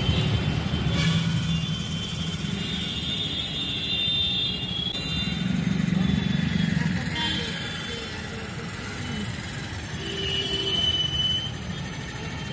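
Slow, stop-and-go city traffic heard from inside a car: a steady low rumble of engines and tyres, with a brief high tone about ten seconds in.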